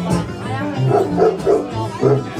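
Two acoustic guitars being played live, strummed and picked. About a second in, a run of short, sharp sounds, a few per second, cuts through the music.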